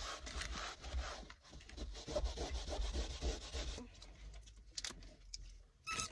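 Scrubbing a car's leather interior door panel with cleaner: quick, even back-and-forth rubbing strokes that stop about four seconds in.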